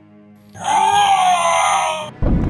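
A loud screaming roar sound effect for the Hulk figure, starting about half a second in and lasting about a second and a half, over quiet background music.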